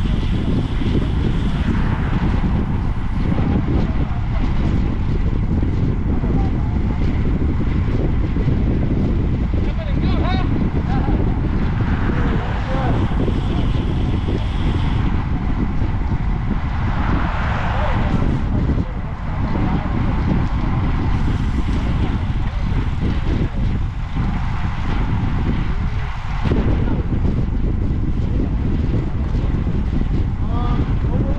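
Wind buffeting the microphone of an action camera on a moving road bike: a loud, steady low rumble.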